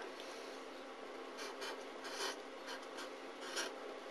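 Felt-tip marker pen writing on paper: a series of short, faint scratchy strokes from about a second and a half in, as the figures are written out.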